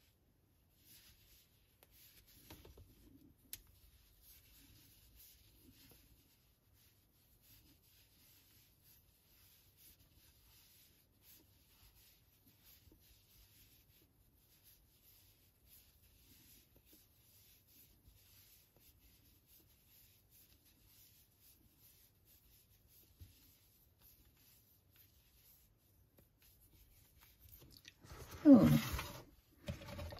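Faint rubbing and small scratchy ticks of wool yarn sliding over a metal double-ended Tunisian crochet hook as stitches are picked up and worked. A brief, louder sound comes near the end.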